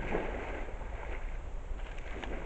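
Red deer stag thrashing its antlers in a muddy wallow during the rut, coating them with mud: irregular wet splashes and sloshing of mud and water, over a steady low rumble.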